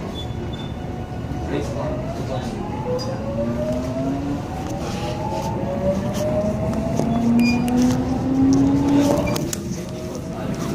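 Seoul Subway Line 1 electric commuter train gathering speed, heard from inside the car: the traction motors give several rising whines over a steady rumble of wheels on rail, getting louder toward the end.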